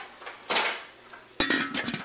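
The lid of a Ninja cooking system pot being handled as the pot is covered: a brief scrape, then a sharp clatter with a short rattle and ringing.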